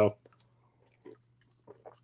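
The end of a spoken word, then a pause holding a few faint, short soft clicks, about a second in and near the end, over a faint low steady hum.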